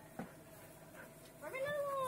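A dog whining: one drawn-out, high note that holds and then falls at the end, after a short knock.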